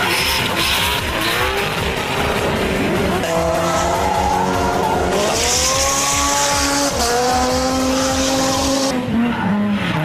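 Racing car engine revving, its pitch rising and falling with several sudden shifts, and tyres squealing in a drift for a few seconds in the middle.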